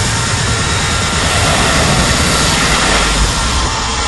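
A jet-engine-like wash of noise with a low rumble, a sound-effect section of an electronic dance mix without a clear beat.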